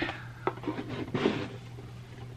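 Light knocks and rustles of card sleeves, dice packs and other trainer-box contents being dropped back into a cardboard Elite Trainer Box, with the cardboard lid slid back on.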